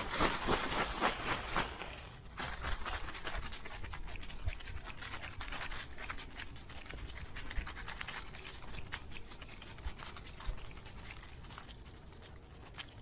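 A dog panting close to the microphone, in quick rhythmic breaths, loudest in the first two seconds and softer after.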